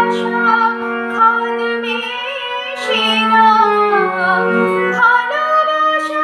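A woman singing a Bengali song with vibrato over long, steady held accompaniment notes that shift to new pitches every second or two.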